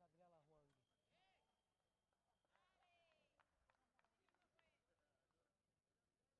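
Near silence: faint hall ambience with distant voices, a faint steady high tone lasting about two seconds, and a few faint clicks near the middle.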